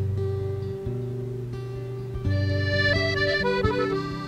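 Instrumental break of a folk-rock song: accordion holding chords that change about once a second, with a quick run of high notes about three seconds in, over acoustic guitar.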